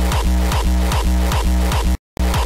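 Hardstyle track playing back from the DAW at 150 BPM: a fast, steady run of kick drums, each with a falling pitch, over a deep sustained bass. Playback cuts out abruptly at the end.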